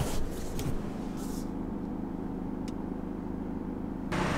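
A BMW car driving, heard from inside the cabin: a steady low engine and road hum, with a few faint ticks.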